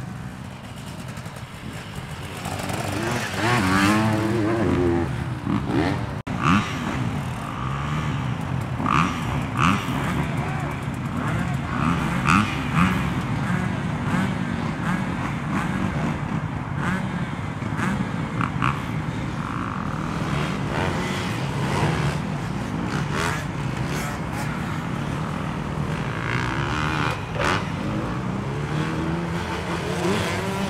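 Dirt bike engines at a motocross track: a bike revving up and down for the first few seconds, then, after a sudden cut, steady engine sound of bikes running with scattered sharp clicks.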